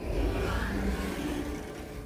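A home passenger lift's sliding doors opening, with a steady whirring whoosh over a low rumble.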